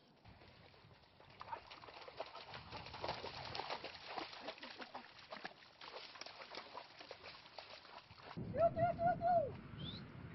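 Dense crackling and rustling of twigs and dry branches as a Malinois pushes through fallen brush. About eight and a half seconds in, the loudest sound: a short, wavering call of about four linked notes that ends in a falling glide, followed by a faint rising whistle.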